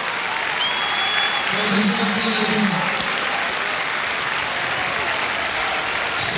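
Football stadium crowd applauding, with many voices swelling together briefly about two seconds in.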